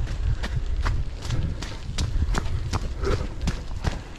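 Running footsteps on a paved path, about three footfalls a second in an even rhythm, picked up by a camera carried by the runner, under a low rumble.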